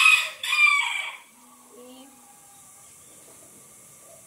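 A rooster crowing loudly. The crow fades out about a second in.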